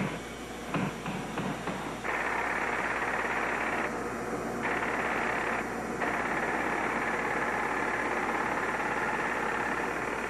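A handheld power tool carving marble: a few knocks in the first two seconds, then a steady hiss as the tool cuts, dropping out briefly twice, about four and six seconds in.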